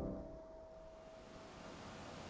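The last note of a hymn on a digital piano dying away: a single faint high tone holds for about a second and a half, then fades into quiet room tone.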